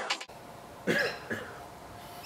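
The tail of electronic music cuts off at the start, then a man makes two brief, cough-like vocal sounds about a second in, against a low background.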